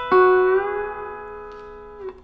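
Electric guitar, a Fender Telecaster, playing a country string bend: the notes are picked once, bent up over about half a second, then held, ringing and slowly fading.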